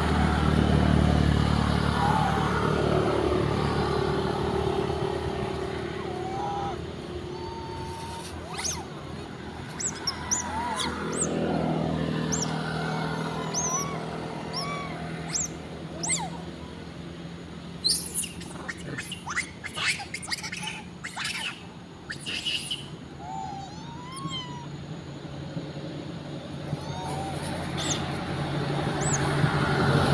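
Road traffic: a motor vehicle running loudest at the start and fading away, another passing about twelve seconds in, and one coming up near the end. Short chirps and squeaks are scattered through the middle.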